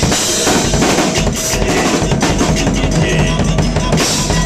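Acoustic drum kit played live in a busy groove, with kick drum, snare and cymbals struck in quick succession, over a hip-hop backing track.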